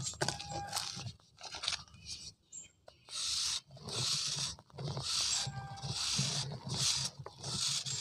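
Knife blade shaving a dry pure cement round: a run of scraping strokes about one a second from about three seconds in, with crumbs falling. Before that, soft crunching as fingers crumble the cement powder.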